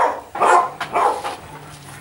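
Dog barking: three short barks about half a second apart in the first second, then quieter.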